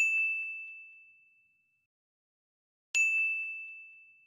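Two identical bell-like ding sound effects about three seconds apart, marking on-screen annotations. Each is a single clear ring that fades away over about a second and a half, with nothing else on the otherwise silent track.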